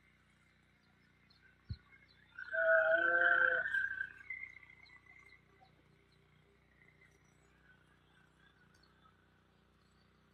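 A single drawn-out pitched animal call, about a second and a half long, a little over two seconds in, preceded by a faint click. The rest is near silence.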